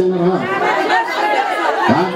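Voices only: a man's voice carries on briefly, then several people talk and call out at once in overlapping chatter.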